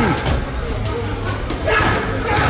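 Gloved punches landing on focus mitts, a few sharp slaps, with music playing underneath and a short vocal sound at the start.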